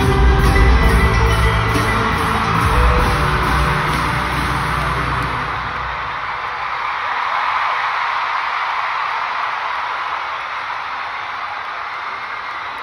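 Live band music with guitars and heavy bass, the song ending about five seconds in, followed by a large arena crowd cheering and screaming.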